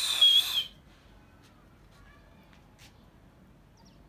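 A person's loud, shrill whistle, held for about a second at one high pitch with a slight dip, cutting off under a second in. After it there is only faint outdoor background with a few faint chirps.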